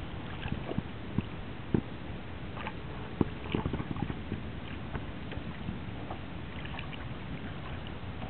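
Small waves lapping and sloshing against a stand-up paddleboard, a steady wash with a few faint knocks and splashes.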